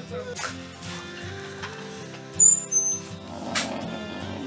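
Soft background music with steady sustained notes, over light handling noises of wooden picture-frame corner samples being shifted on a cross-stitched canvas, the loudest a short knock about two and a half seconds in.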